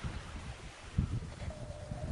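Wind rumbling on an outdoor camera microphone, with a soft bump about a second in and a faint, distant held note near the end.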